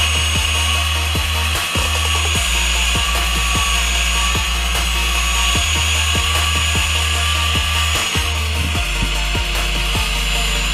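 Angle grinder cutting into the steel shell of a hermetic compressor: a steady, high grinding whine that starts abruptly and holds throughout. Background music with a deep bass line plays underneath.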